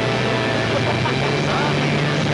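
Engine of the vehicle towing the mattress running steadily, its pitch rising a little about a second in, with a brief voice-like cry over it.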